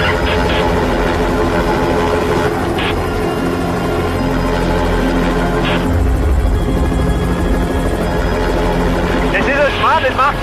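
Helicopter running steadily, a continuous low rumble, with background music over it.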